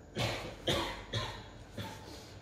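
A man coughing four times in quick succession, the last cough weaker.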